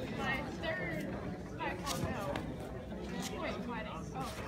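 Indistinct chatter of several people talking in a large hall, with a couple of brief sharp sounds about two and three seconds in.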